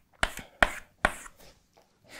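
Chalk striking a blackboard as straight lines are drawn: three sharp taps, each trailing off in a short scrape, about 0.4 s apart in the first second or so.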